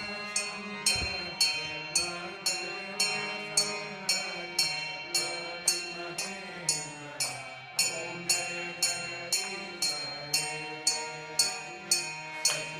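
Aarti music: a ringing metal bell or cymbal struck evenly about twice a second, each stroke ringing on, over a sustained, slowly moving melody.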